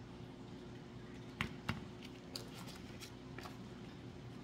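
Quiet handling of a hot glue gun and craft-foam petals: a few light clicks and taps, two clearer ones about a second and a half in, then fainter ticks, over a faint steady hum.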